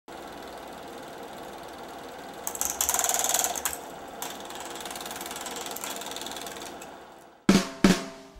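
Intro of a rock song: a fast, rattling, drum-roll-like clatter that swells about two and a half seconds in, falls back and fades away, then two sharp drum hits just before the end.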